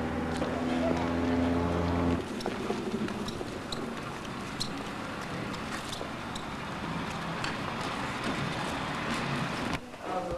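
A small utility vehicle's engine running steadily, cut off abruptly about two seconds in. It is followed by outdoor background noise with scattered light clicks and knocks.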